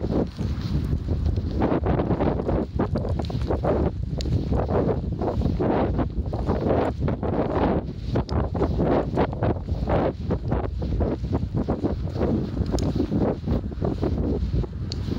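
Wind buffeting an outdoor handheld microphone: steady low noise with irregular gusts.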